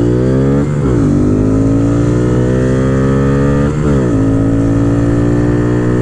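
Modified 2022 Honda Grom's single-cylinder engine (aftermarket cam, intake and ECU flash) accelerating hard through the gears. Its pitch climbs, drops at an upshift under a second in, climbs again, drops at a second upshift near four seconds, then rises once more.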